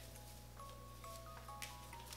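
Soft background music of plain held notes stepping from pitch to pitch, with a few faint crinkles from a tinsel garland being draped on an artificial tree.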